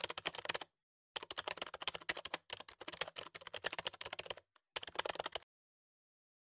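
Typing sound effect of rapid key clicks, played as on-screen text is typed out letter by letter. The clicks pause briefly about a second in and again at about four and a half seconds, then stop about five and a half seconds in.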